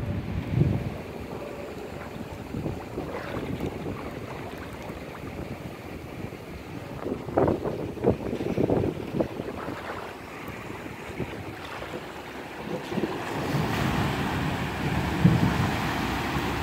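Wind buffeting the microphone over a flooded street. Near the end a van drives through the floodwater, a growing rush of tyres and splashing wash.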